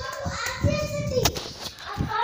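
Children's voices, one of them a drawn-out vowel, with a single sharp click about a second and a quarter in.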